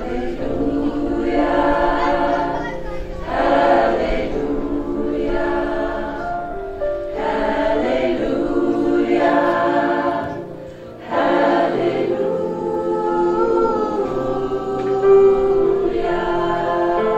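Mixed choir singing, mostly women's voices with some men's, in long held phrases, with a brief break between phrases about ten and a half seconds in.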